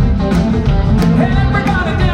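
A live rock band playing with a steady drum beat, electric guitars and bass.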